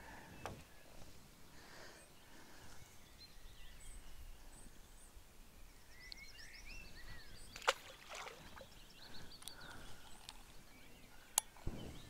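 Faint background noise with a few short bird chirps, most of them about six to seven seconds in, and a couple of sharp clicks, one near eight seconds and one just before the end.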